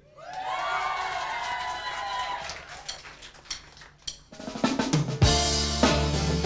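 Live rock band starting a song: a held note bends up and back down for about three seconds, then after a few light taps the guitars come in and, about five seconds in, the full band with drum kit.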